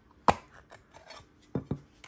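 Handling of a hard plastic card case: one sharp click about a third of a second in, a few faint ticks, then two more clicks close together near the end.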